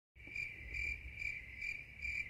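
Quiet crickets chirping: a steady high trill that swells about twice a second. It starts abruptly and cuts off suddenly, like an edited-in sound effect.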